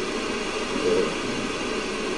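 Steady rushing background noise, with a faint murmur of a voice about a second in.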